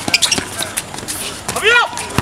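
Basketball bouncing and players moving on an outdoor hard court, a few sharp knocks in the first half second, with a loud shout from a voice near the end.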